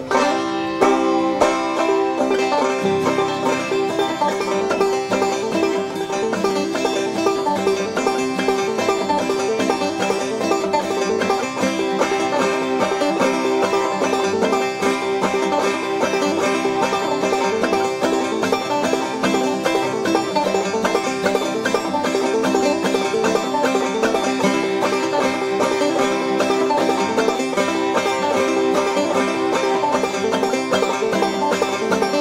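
Five-string banjo played solo in the clawhammer style, a continuous old-time tune with steady, even rhythmic picking.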